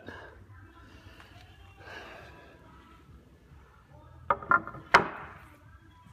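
A cut-out wooden table leg set onto the wooden table frame: three sharp wooden knocks in quick succession about four to five seconds in, the last the loudest.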